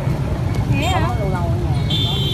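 Motorbike traffic on a busy street, a steady low rumble under a woman's voice speaking partway through.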